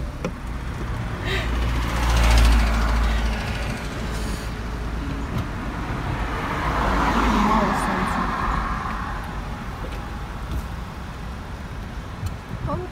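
Car on the move, heard from inside: a steady rush of road and wind noise. A deep rumble swells about two seconds in, and a broader rush swells again around seven to eight seconds.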